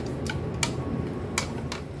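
Wooden chopsticks clicking against a metal wok about four times while stir-frying duck tongues, over a steady low rumble.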